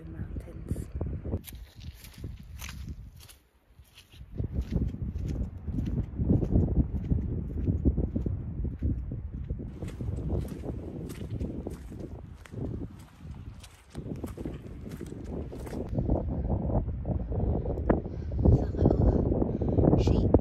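Wind buffeting the microphone in uneven low rumbling gusts, with the crunch of footsteps and small clicks as a hiker walks a grassy, stony mountain path.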